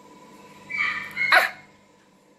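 Two short animal calls about a second in, the second one sharper and louder.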